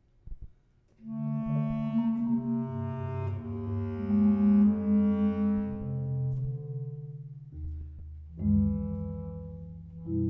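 Bass clarinet playing long, sustained low notes with marimba underneath, coming in about a second in after a near-silent pause with a couple of faint knocks. A new, louder chord enters near the end.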